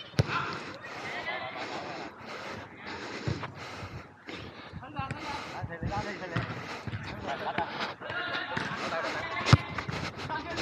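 A football being kicked on an artificial-turf pitch: a sharp thud just after the start and a louder one near the end, with weaker thuds between. Players call out across the pitch throughout.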